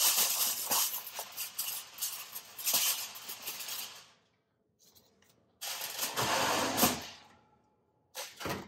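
Aluminium foil crinkling and rustling as a crumpled sheet is handled and laid onto an oven rack, a dense crackle lasting about four seconds. After a short pause, a second burst of rustling noise lasts about a second and a half.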